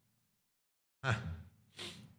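Dead silence, then about a second in a man gives a short breathy laugh, "heh", followed by a second, softer exhale.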